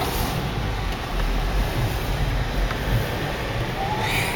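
Car driving over snow, heard from inside the cabin: a steady low rumble of engine and tyres.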